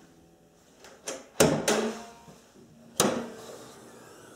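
Sharp clunks from the 2006 Acura TL's hood being opened and raised: a loud one about a second and a half in and another near three seconds, each trailing off, with lighter knocks around the first.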